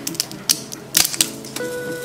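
A crisp air-fried corn tortilla chip snapped in half by hand: a few sharp cracks, the loudest cluster about a second in. The clean snap shows the chip is fully crisp.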